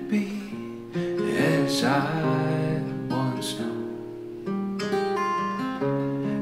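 Acoustic guitar with a capo, played in ringing chords that change every second or so.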